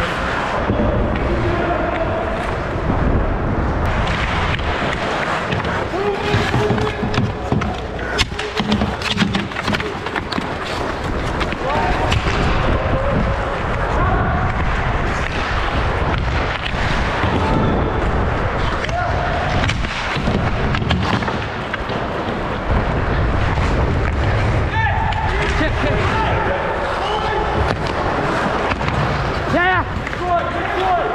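Ice hockey game heard up close on the ice: skates scraping, sticks and puck clacking in many sharp knocks, over a steady rumble, with players' and spectators' indistinct shouts and voices throughout.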